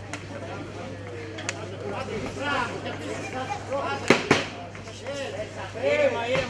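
Two sharp smacks of kickboxing strikes landing, a fraction of a second apart about four seconds in, the loudest sounds here. Voices call out from ringside over a steady low hum.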